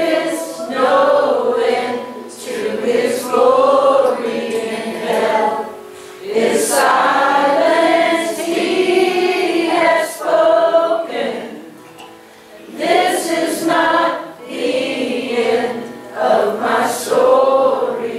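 A live worship song: several voices singing together in phrases with short breaks, accompanied by guitars.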